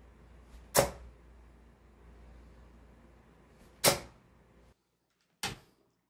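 Two Caliburn Matrix 95% tungsten steel-tip darts thudding into a bristle dartboard about three seconds apart, each a single sharp hit. They land in the treble 20 beside a dart already there. Near the end, after a sudden drop to silence, a shorter sharp click follows.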